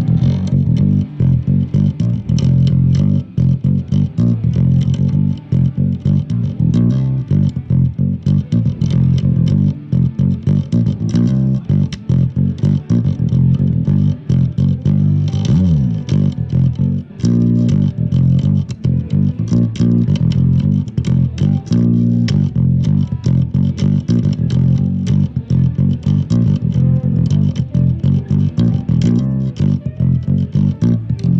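Electric bass guitar played loud through an Eich bass amp, a fast, busy run of low notes with a pitch slide about halfway through.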